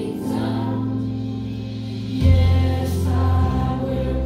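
A boy singing a worship song through a handheld microphone and PA, over instrumental accompaniment with long held bass notes; the bass steps down to a lower, louder note about two seconds in.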